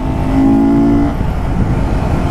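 Honda CBR250R's single-cylinder engine running at a steady pitch while the bike is ridden, with a low wind and road rumble on the microphone. The engine is fitted with a BMC performance air filter. Its steady note fades about a second in, leaving mostly the wind and road rumble.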